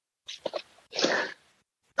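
A couple of faint mouth clicks, then one short, breathy rush of air, like a sharp intake of breath close to a headset or laptop microphone, between stretches of gated silence on a video-call line.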